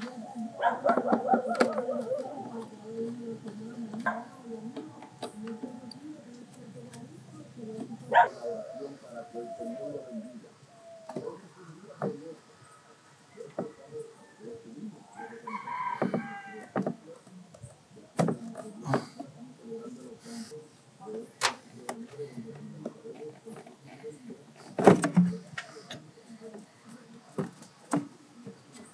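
Hand work on an engine's air intake: scattered clicks and knocks from hose clamps and tools, and rubber and plastic handling as the intake hose is worked loose and pulled off the throttle body. The sharpest knock comes about 25 seconds in. A background call, from a voice or an animal, sounds about 16 seconds in.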